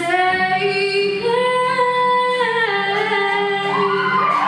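Female voices singing a slow melody in long held notes that slide between pitches, with a steady low accompaniment underneath.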